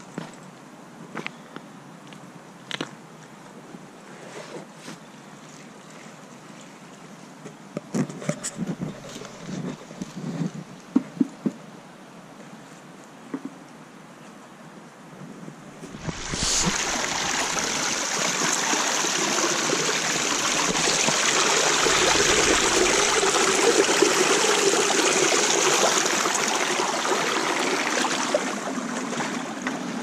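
A quiet stretch with scattered small knocks and clicks, then, about halfway, a steady loud rush of shallow stream water running over stones that lasts almost to the end.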